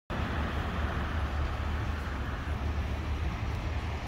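Steady street traffic noise: a continuous low rumble of cars on a city road.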